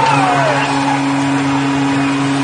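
Arena goal horn blaring a long, low, steady blast right after an overtime goal, over a noisy background.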